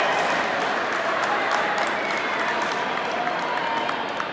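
Spectators clapping and cheering in a large indoor hall, with many voices talking over one another and sharp individual claps throughout.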